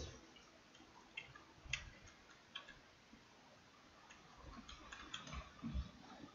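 Faint, scattered clicks over near silence: a few single ticks in the first half and a small cluster near the end.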